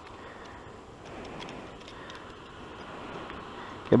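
Steady outdoor background hiss with a few faint small clicks from a pair of plastic sunglasses with a broken tip being handled.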